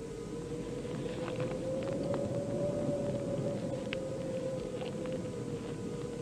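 Sustained eerie drone of a science-fiction soundtrack: a single tone that slowly rises a little in pitch about halfway through and sinks back, over a steady wind-like rumble.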